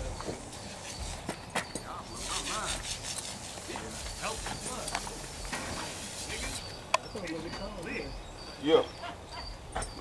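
Faint, indistinct talk with a single sharp click about seven seconds in, then a short spoken "yeah" near the end.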